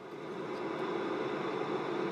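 Steady rush of air through ventilation ductwork, fading in at the start and holding even.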